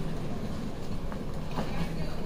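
Suitcase wheels rolling over a tiled floor, a steady rumble with a few faint clicks, over the general background noise of a busy terminal concourse.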